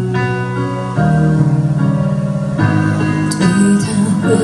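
Live band playing an instrumental passage of a slow ballad: held chords that change about a second in and again past halfway, with no singing.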